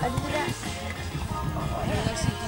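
Background music, a song with a singing voice.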